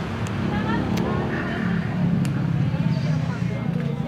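Road traffic: a steady low rumble from a motor vehicle engine running close by, with faint voices and a few light clicks over it.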